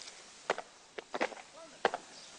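Army boots stamping on a concrete parade ground as a squad of recruits marches in drill formation: a handful of sharp, uneven steps, with brief faint voices between them.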